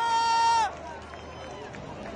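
A raised voice shouting a long, held cheer that drops in pitch and breaks off less than a second in, followed by the hubbub of a celebrating crowd.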